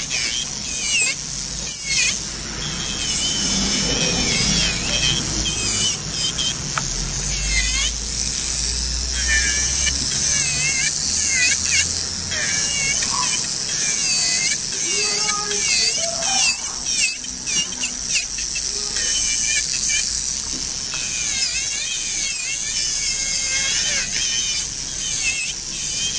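Electric nail drill with a carbide bit filing down gel at the cuticle area. Its whine dips in pitch again and again as the bit is pressed to the nail and rises as it lifts off.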